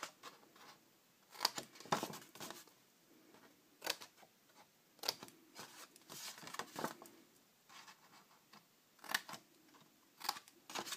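Small scissors cutting designer paper, a series of separate short snips spread over several seconds as little triangles are trimmed out where the envelope's score lines cross.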